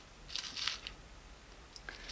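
A brief crinkle of a plastic package of small dressmaker pins being picked up and handled, about half a second in, followed by a faint tick near the end.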